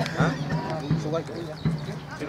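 Indistinct voices of rugby players and people on the sideline calling out around a ruck, with a few dull low thumps.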